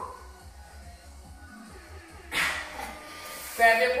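Faint background workout music. About two seconds in comes a short, loud burst of breathy noise, and a woman's voice starts near the end.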